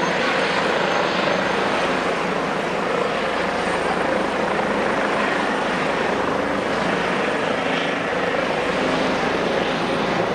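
Airbus H145M helicopter hovering low with a loud, steady rotor and turbine noise.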